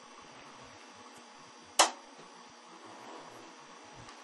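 Faint steady hiss with a single sharp click a little under two seconds in.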